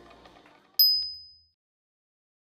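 A single high, bell-like ding a little under a second in, ringing briefly and fading within about half a second.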